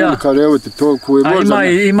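A man talking, with a steady high chirring of crickets behind him.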